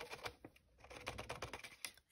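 Fine glitter pouring through a rolled paper funnel into a clear plastic bauble: a faint, rapid pattering of grains, with a short lull about half a second in.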